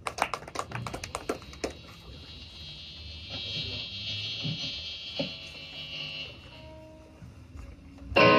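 Quiet, scattered electric guitar notes and amplifier hiss through Marshall amps, with a few clicks in the first two seconds and a short held note near the end.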